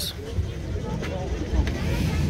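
Low, steady rumble of outdoor background noise with faint voices talking in the distance.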